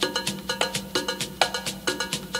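Salsa music played from a cassette tape, in an instrumental percussion passage: sharp, evenly spaced strikes about four a second over a held low note, with no singing.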